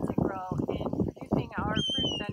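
A woman's voice talking, its pitch swooping up and then down about one and a half seconds in. A thin, steady, high tone comes in near the end.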